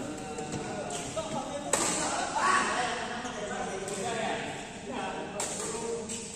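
Two sharp badminton racket hits on a shuttlecock, about 1.7 s and 5.4 s in, under people talking in a large echoing hall.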